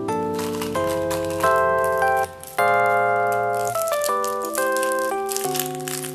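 Background music of sustained chords that change about every half second to a second, with a short drop-out about two seconds in. A light rustle runs on top of it.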